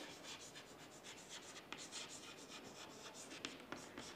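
Chalk writing on a chalkboard: a run of faint, short scratchy strokes, several a second.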